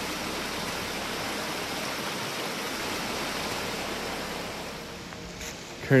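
Small mountain creek rushing over rocks: a steady, even wash of water that eases slightly near the end.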